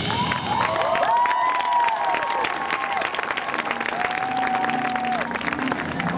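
Stadium crowd applauding and cheering, with a few drawn-out whoops rising and falling over the clapping.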